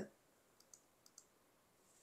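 Near silence: room tone with a few faint, short clicks in the middle.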